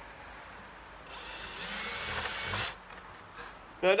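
Cordless drill running for about a second and a half, boring a 1/8-inch hole through the side of a plastic five-gallon bucket; it starts about a second in and stops suddenly.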